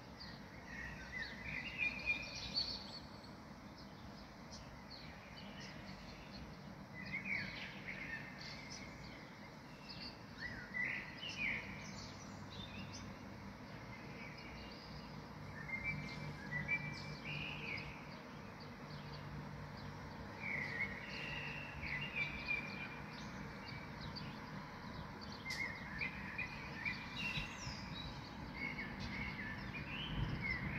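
A songbird singing short chirping phrases, one every four to six seconds, over a faint steady background noise.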